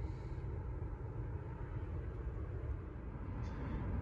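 Steady low background hum with faint noise, no distinct events.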